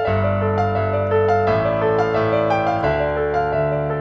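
Piano playing a minor-key movie-theme motif at double speed over the Andalusian cadence. A quick run of right-hand melody notes sounds over held low left-hand bass chords that change about every second and a half.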